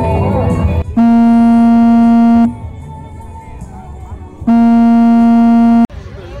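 Two long, loud, steady blasts of a horn- or buzzer-like tone, each about one and a half seconds, on one unchanging pitch, starting and stopping abruptly. Music plays before the first blast and stops just before it begins.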